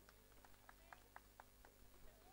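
Near silence, with faint, quick, even hand claps, about four a second.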